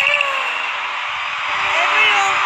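Concert audience cheering and screaming: a steady wash of crowd noise. A voice trails off at the start, and speech comes back in near the end.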